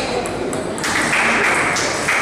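Table tennis ball being struck by bats and bouncing on the table during a rally, with voices in the background.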